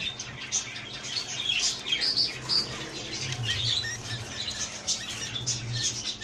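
Budgerigars chirping and squawking in a breeding cage: many short, scattered calls, with some rustling and light knocks as a hand reaches in among them and catches a chick.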